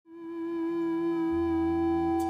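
A single sustained musical tone fading in and holding steady, joined by a low bass note a little past halfway: the held opening of live rock band music.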